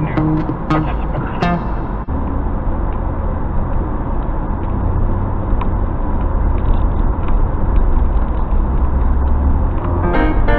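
Steady low rumble of an off-road vehicle driving slowly over a dirt track, heard from inside the cab, with background guitar music over it that is clearest in the first second or so.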